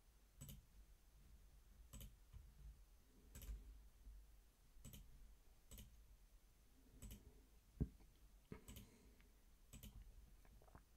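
Faint computer mouse clicks, about one every second or so, with one louder dull thump near the end.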